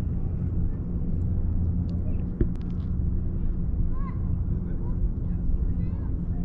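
A steady low mechanical hum, as of an engine running nearby, with a few faint high chirps about four seconds in.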